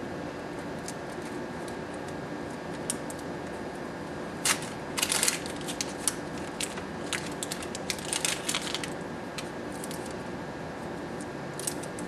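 Adhesive bandage being unwrapped: its paper wrapper torn open and its backing strips peeled off, heard as scattered short crackles, busiest in the middle, over a steady room hum.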